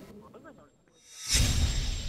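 A whoosh-and-boom transition sound effect hits suddenly about a second and a half in, with a deep low rumble under a hissing high shimmer that then slowly fades, marking the logo sting. Before it, a faint voice on the radio link.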